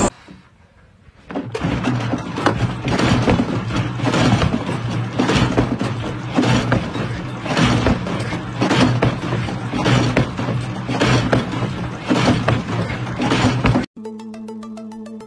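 Homemade motor-driven mechanical bull running and bucking: a steady motor hum under irregular metal clanks and rattles from its chain drive and steel frame.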